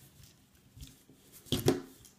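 Hands handling a plastic rubber-band loom and its rubber bands: faint rustles and small clicks, then a short, loud clatter of plastic about one and a half seconds in as the loom is moved.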